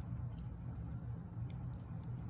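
Glass spice jar of crushed mint being shaken over a paper plate: a few faint, soft ticks over a steady low hum.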